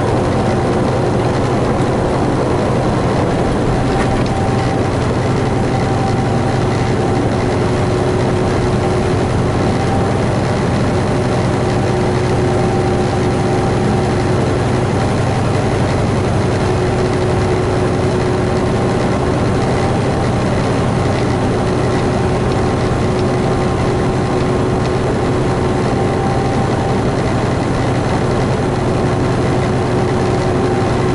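Semi truck's diesel engine and road noise heard from inside the cab while cruising at highway speed: a steady, even drone with a faint constant hum above it.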